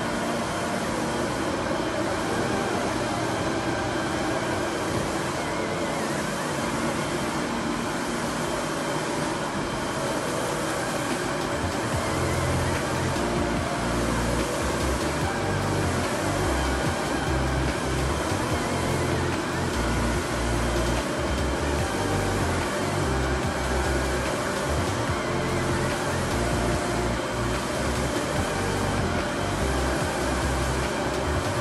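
Steady running noise of a large-format UV printer at work, its print carriage and lamps going. Background music with a bass line comes in about ten seconds in and plays over it.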